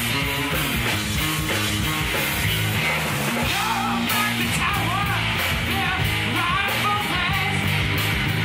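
A rock band playing live: electric guitars, bass and drum kit, loud and steady, with a wavering high melody line over it from about halfway through.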